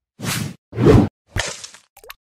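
Three quick whoosh sound effects in a row, each a short rushing sweep with brief silence between, the last one starting with a sharp hit.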